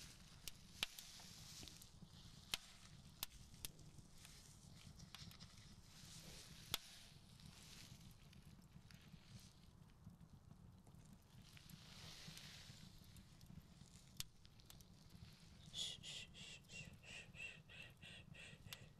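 Near silence over a low steady ambient hum, with soft brushing swells and a few light clicks from a hand and swab working close to the microphone during wound cleaning. Near the end comes a quick run of short pitched pulses, about five a second.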